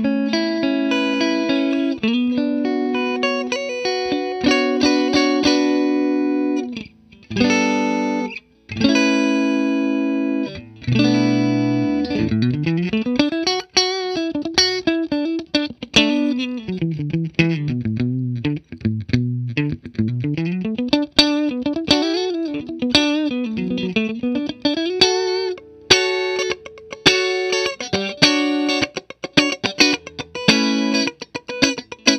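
Electric guitar, a Fender American Professional II Stratocaster HSS, played through a Bondi Effects Squish As compressor pedal into a Fender '65 Twin Reverb amp. It plays held chords for about the first twelve seconds, then fast single-note runs rising and falling, then chordal riffs again near the end. The pedal's gain-reduction meter is lit, so the compressor is squeezing the signal.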